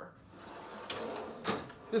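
Steel toolbox drawers sliding on their runners: the wrench drawer pushed shut and the socket drawer below pulled open, with two sharp clicks about a second and a second and a half in.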